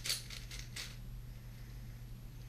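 A plastic 4x4 speed cube being turned by hand: its layers clack and click in quick bursts, loudest in the first second, then softer turning.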